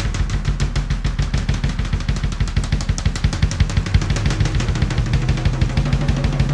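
Drum kit played in a fast, busy groove, with dense snare and bass-drum strokes and cymbals over them.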